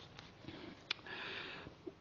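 A man sniffing, drawing a short breath in through the nose in a pause between spoken phrases, with a faint click just before it.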